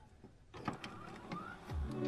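Faint electronic intro sound effects for a glitchy loading-screen animation: scattered soft clicks and a short rising blip, then a low thud near the end as the music starts to come in.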